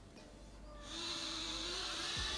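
Tiny propellers of a toy quadcopter in a foam flying-wing shell spinning up to a steady high-pitched whine about a second in, as the drone is launched from the hand.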